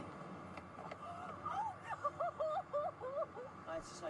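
A high-pitched voice making short, wordless sounds that rise and fall, from about a second in until near the end.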